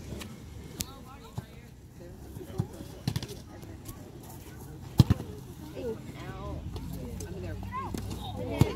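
Outdoor youth soccer match heard from the sideline: distant players' and spectators' voices, with several sharp thuds of the ball being kicked. The loudest thuds are a quick pair about five seconds in.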